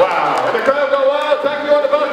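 Indistinct speech, a man's voice.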